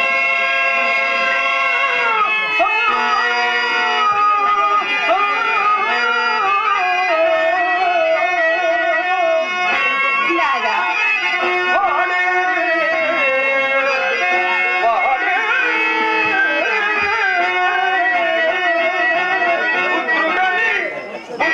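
A man singing a Telugu stage-drama verse (padyam) in long, drawn-out, ornamented phrases that glide between held notes, over harmonium accompaniment.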